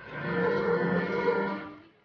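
A crowd of marchers chanting a slogan in unison: one held phrase that swells and then fades away near the end.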